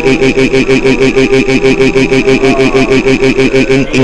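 A stuttering, looped voice-like sound from the cartoon's soundtrack, a short pitched cry repeated about eight times a second over a steady high tone.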